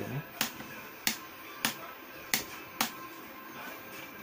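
Five sharp plastic clicks, about two thirds of a second apart: the chin-vent slider of an AGV K3 SV full-face helmet being pushed open and shut. Faint background music runs underneath.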